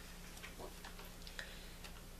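Quiet room tone with a steady low hum and a few faint, irregularly spaced ticks.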